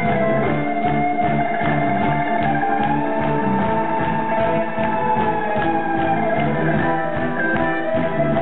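Live rock band playing an instrumental stretch of a song without vocals: a sustained lead line over guitar and keyboard chords and a steady beat, recorded from within the audience. The held lead line slides up about three seconds in and eases back down near the end.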